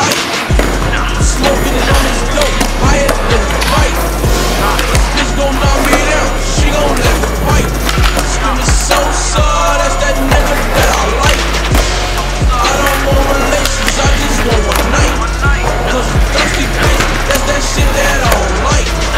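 Skateboard sounds, wheels rolling on concrete with tail pops and board landings, over a hip-hop track with a deep, booming bass line.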